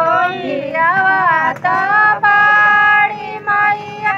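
Women singing a folk song for the wedding ritual in high voices, with long held notes and short breaks between phrases.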